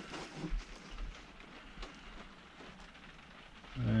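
Faint, steady rain on the motorhome's roof, with a few small clicks from a plastic tub being turned in the hand.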